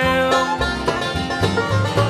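Live bluegrass band playing a short instrumental fill between vocal lines: acoustic guitar and banjo picking, with held melody notes over a steady beat.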